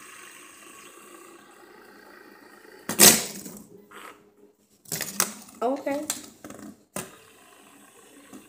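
Fidget spinners being stacked and spun on a glass tabletop: a faint steady whir for the first few seconds, a short loud burst about three seconds in, and a sharp click near seven seconds. Wordless vocal sounds come in between, from about five to seven seconds.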